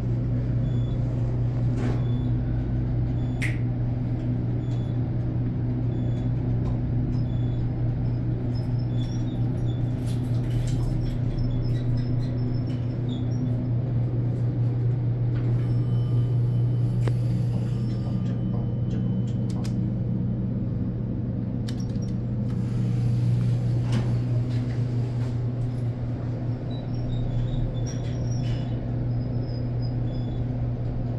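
Steady low hum and rumble inside a 1980s Dover traction elevator car while it travels, with a few faint clicks.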